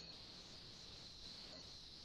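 Near silence: a faint, steady high-pitched hiss of room tone on the call's audio line, with one faint click right at the start.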